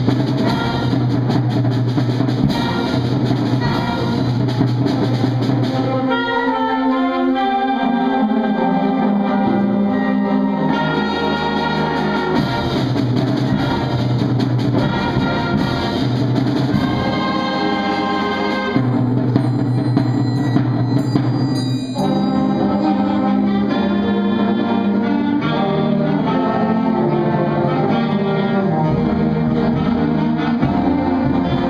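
Student concert band playing a piece with brass, saxophones, flutes and percussion together. The instrumentation shifts several times as the piece goes on.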